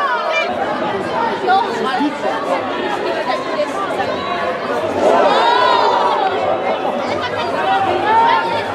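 Overlapping chatter and calls from players on a football pitch and spectators in a small stand, with no single clear speaker. A louder, higher call rises out of it about five seconds in.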